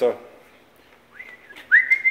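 A person whistling: a short rising whistle about a second in, then a louder one that sweeps up and holds with a slight waver near the end.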